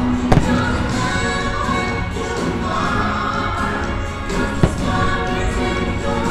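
Fireworks show soundtrack of choral music with singing, and two sharp firework bangs over it, one just after the start and one about two-thirds of the way through.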